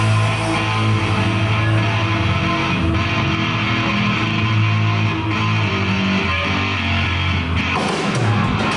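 Live rock band playing, with electric guitars and drums.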